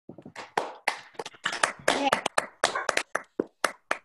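Scattered applause from a few people clapping over a video call, the claps irregular and overlapping.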